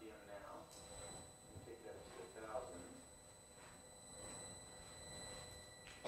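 Faint, distant speech, a few murmured words in an otherwise quiet room, with a thin steady high whine underneath.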